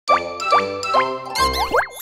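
Cartoon logo intro jingle: three quick upward-swooping pops about half a second apart over bright music, then a busier flourish and a fast rising glide near the end.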